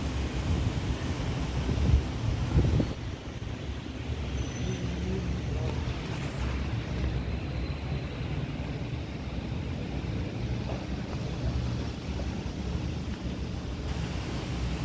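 Wind buffeting the microphone: a steady low rumble, with two louder bumps about two to three seconds in.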